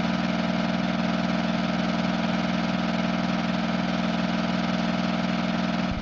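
Old-style film projector sound effect: a steady mechanical whir with a fast, even flutter.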